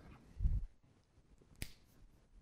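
A dull low thump about half a second in, then a single sharp click about a second later.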